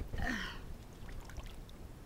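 Swimming-pool water lapping faintly around an inflatable float, with a short hiss near the start.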